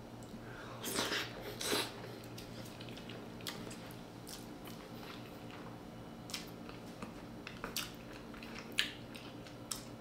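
A person chewing a mouthful of soft omelette rice with melted cheese, with scattered small clicks over a faint steady hum; the chewing is a little louder in the first two seconds.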